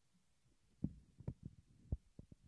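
Handling noise from a microphone being taken off its stand: a handful of short, dull thumps and bumps, the loudest about a second in and just before the end.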